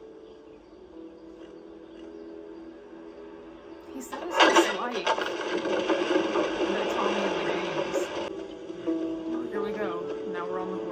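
TV drama soundtrack played from a screen: soft held music notes, then a louder, busier stretch starting suddenly about four seconds in that cuts off abruptly at a scene change just after eight seconds. Dialogue resumes faintly near the end.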